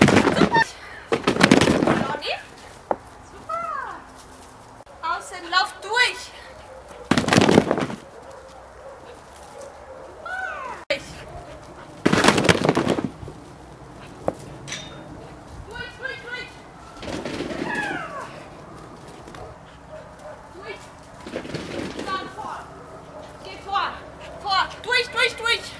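A person's voice in short, intermittent calls, with small chirps like birds and several loud rushes of noise about a second long every few seconds.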